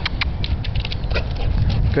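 A dog jumping down from a tree trunk and running over grass: a quick, irregular string of short light scuffs and ticks, over a low rumble of wind on the microphone.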